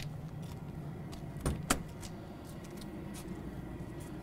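Motorhome exterior basement compartment door being unlatched and swung open: two sharp latch clicks about a second and a half in, over a steady low hum.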